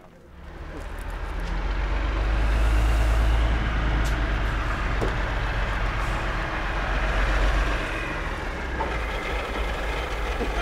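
Large dump truck's diesel engine rumbling close by, building up over the first three seconds and then running steadily.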